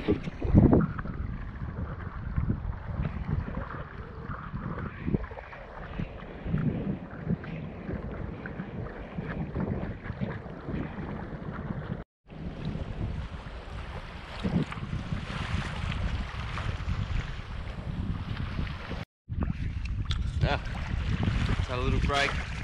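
Wind buffeting the camera's microphone, with waves sloshing and splashing against a sailing sea kayak's hull as it runs through choppy water. The sound drops out for a moment twice.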